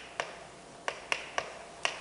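Chalk tapping against a blackboard in short, sharp clicks, about five over two seconds, as characters are written.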